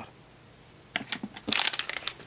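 Packaging being handled, rustling and crinkling in a few short crackles that start about halfway through, after a moment of quiet room tone.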